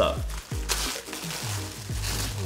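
Tissue paper rustling and crinkling in short bursts as it is pulled open by hand, over background music.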